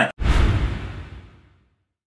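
Edited-in transition sound effect: a sudden whoosh-like hit with a deep boom in it, dying away over about a second and a half.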